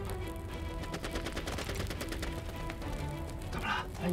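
Distant gunfire, many sharp cracks in quick succession like machine-gun fire, under background music with held notes.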